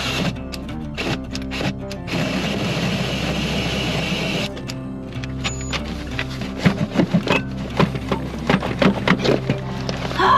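Background music over a cordless drill driving a hole saw into the wooden van floor. The cutting noise starts about two seconds in and stops about halfway through, followed by short, sharp knocks.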